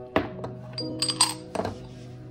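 Several sharp clinks and knocks, the loudest near the start and just after a second in, as a hydrothermal autoclave's metal vessel body and white PTFE liner are handled and set down on a wooden table, over steady background music.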